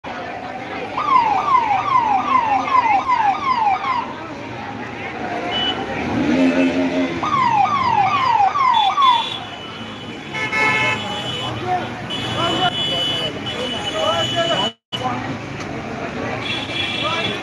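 Police vehicle siren sounding in two bursts of rapidly repeating falling wails, about two and a half a second, the first starting about a second in and the second around seven seconds in. People's voices are heard between the bursts.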